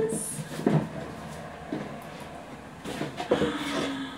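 A cardboard box being handled and opened, its lid lifted: a few short knocks and scrapes of card about a second in, near two seconds and again after three seconds.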